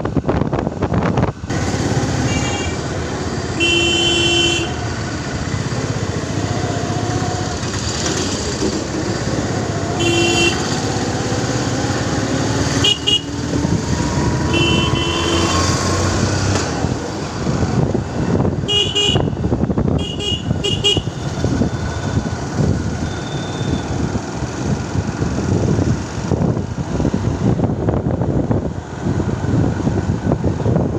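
Steady engine and road noise of a vehicle driving along a town street, with short vehicle-horn toots sounding again and again, several in quick succession about twenty seconds in.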